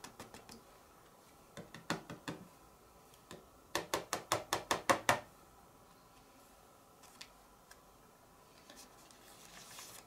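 A quick run of about ten light, sharp taps, loudest about four seconds in, after a few scattered knocks. The card is being tapped to shake off loose embossing powder before heat embossing.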